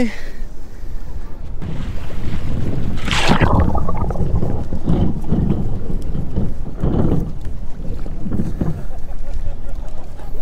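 Wire crab trap with a GoPro inside dropping into the sea: a loud rush of water about three seconds in as it goes under, then steady muffled underwater rumbling and rushing as it sinks to the bottom.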